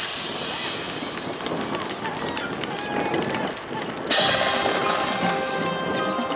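High school marching band cuts off a chord. For about four seconds there are only voices from the stands and light clicks. Then the full band comes back in loudly with sustained chords.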